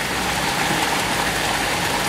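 Steady splashing of water pouring from the stone fountain's spouts into its basin.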